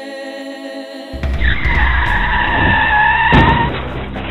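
Car tyres screeching as an SUV brakes hard, starting about a second in and lasting over two seconds, with a thump near the end. A held choral chord of film music plays before the screech.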